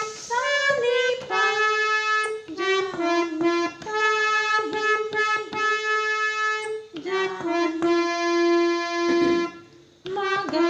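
Harmonium played one note at a time, picking out a slow melody of sustained reed notes. Near the end one note is held for about two seconds, then fades away.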